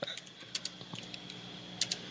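Computer keyboard typing: a few faint, scattered keystrokes, with a couple of sharper clicks near the end.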